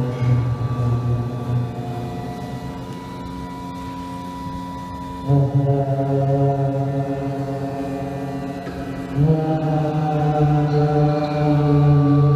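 Experimental drone music: sustained, layered low tones held steady, with a new chord of tones coming in and getting louder about five seconds in and again about nine seconds in.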